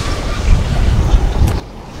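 A loud, low rumbling rush of noise with no clear pitch, cutting off abruptly about one and a half seconds in.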